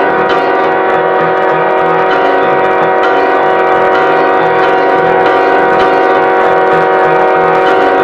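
Music from the film's original score: a dense, sustained chord of many held notes, steady throughout.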